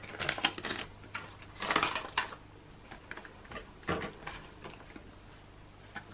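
Rustling and clicking of clear plastic zip cash envelopes in a ring binder being handled and opened as banknotes are taken out, busiest in the first two seconds, with another sharp click about four seconds in.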